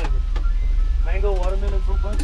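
Ice cream truck's engine idling with a steady low hum while its jingle plays a simple melody of held single notes, with a voice about a second in.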